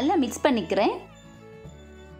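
A loud, wavering voice-like cry in two parts, its pitch wobbling up and down, ending about a second in, over soft steady background music.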